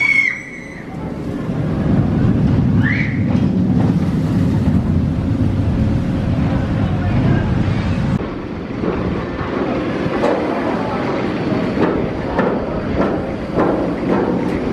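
Zierer tower coaster train running over its steel track, a steady low rumble, with riders screaming briefly near the start and again about three seconds in. After a cut near the middle it is quieter, with scattered clicks as a train works up the vertical lift.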